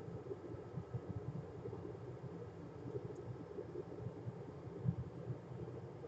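Faint, steady low background rumble and hum of a workbench room, with no distinct event.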